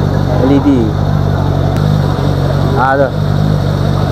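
An engine idling steadily: a low, even drone that does not change.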